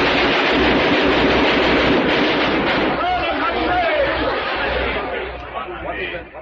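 Old radio-drama sound effect of a Gatling gun firing one long rapid burst, with men's voices shouting through it in the second half before it tapers off near the end.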